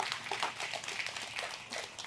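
Light applause from a small audience: many scattered hand claps running on through the pause.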